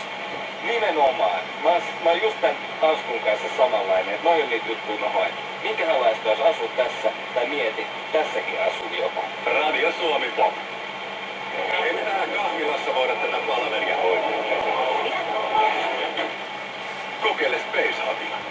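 Finnish talk from a radio in the room, continuous and thin-sounding, with no bass or treble.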